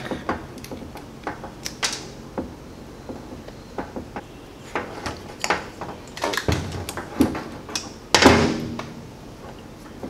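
Hand crimping tool pressing butt connectors onto headlight wires, with scattered clicks and knocks of tools and wire handled on a metal workbench. A louder knock comes about six and a half seconds in, and a longer, louder scrape about eight seconds in.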